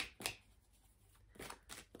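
Tarot cards being handled: a few faint, short card sounds, two at the start and a quick cluster of three near the end.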